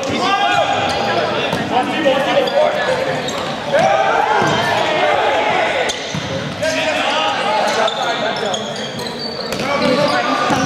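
Volleyball players and spectators shouting and calling over one another on a gym court, with sharp smacks of the volleyball being hit.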